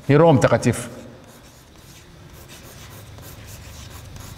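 A man's brief spoken sound right at the start. It is followed by chalk scratching and tapping on a blackboard in short, irregular strokes as a word is written.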